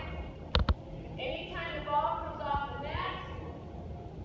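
A person talking in a large gym, with two sharp clicks in quick succession about half a second in.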